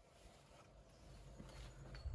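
Near silence: faint low background rumble.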